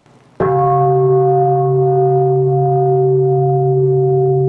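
A deep, gong-like tone struck about half a second in, ringing on loud and steady with several held pitches, the start of the program's closing theme.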